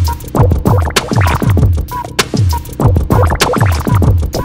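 Background music with a steady beat: about three deep bass drum hits a second, each sliding down in pitch, over sharp percussion clicks.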